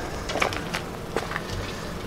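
A few faint clicks and rustles from someone moving about with a handheld camera, over a low background.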